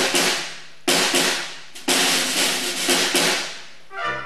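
School wind band hitting three loud accented chords about a second apart, led by the drum kit and cymbals, each crash ringing out and fading before the next.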